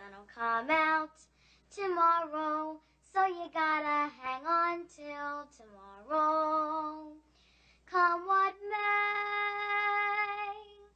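A solo voice singing without accompaniment in short phrases, with brief silent pauses between them; the last note is held for about two seconds near the end.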